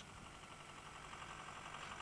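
Faint, steady running of a tractor towing an airblast mistblower, slowly growing a little louder.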